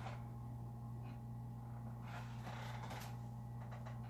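Quiet room tone: a steady low hum with a few faint, brief rustles.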